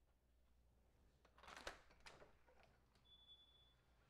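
Near silence broken by a short rustle and a sharp click about one and a half seconds in, then a few softer clicks: a house door's latch and handle being worked as the door is opened. A faint, steady high tone follows near the end.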